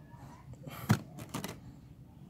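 A plastic engine-oil bottle set down on the ground with a single knock just under a second in, followed by a few light handling clicks.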